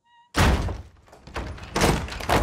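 Heavy cinematic impact hits: a sudden loud thunk about a third of a second in that dies away, then a second hit building up near the end.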